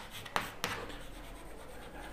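Chalk writing on a chalkboard: a sharp tap of the chalk about a third of a second in, another soon after, then light scratching strokes as a word is written.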